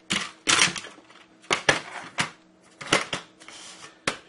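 Drawing supplies being handled on a desk: a quick, uneven series of short clatters, knocks and rustles, about six in four seconds.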